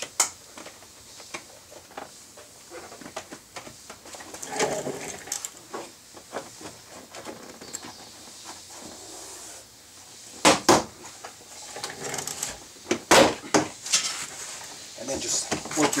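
Plastic retaining clips of a Kia Forte 5 front door panel snapping loose as the panel is levered and pulled off the door, with handling rustle between. There are two sharp snaps about two-thirds of the way through, then three more a couple of seconds later.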